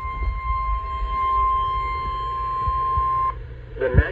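Weather alert radio sounding the steady single-pitch NOAA Weather Radio warning alarm tone, which cuts off suddenly about three seconds in, just before the warning message is read.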